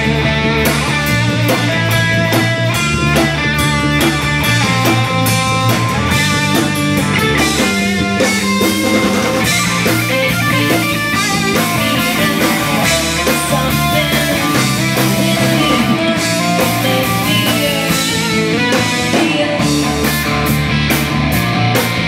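A rock band playing live, loud and continuous: electric guitar over a drum kit with cymbals.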